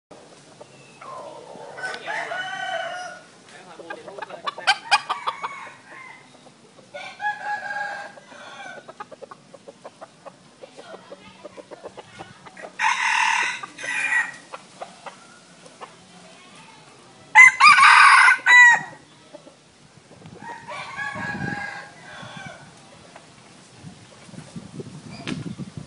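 Junglefowl rooster crowing: two loud, short crows about halfway through, the second the louder, with softer calls and clucks between.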